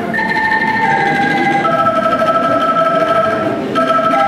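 A children's ensemble of bamboo angklungs, shaken to sustain ringing pitches, playing held chords of a slow melody that change a few times.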